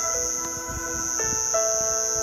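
Soft background music of held keyboard-like chords that shift a few times, over a steady high-pitched chirring of crickets.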